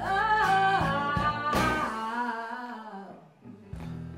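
A singer holding and sliding through a long melodic line over guitar accompaniment in a soul ballad. The voice glides down and fades about two and a half seconds in, the music nearly drops out, and the accompaniment comes back just before the end.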